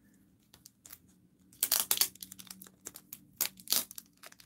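Clear plastic wrapper on a pack of mini photo cards crinkling and tearing as it is picked open by hand: a string of short crackles with two louder bursts, one around the middle and one near the end.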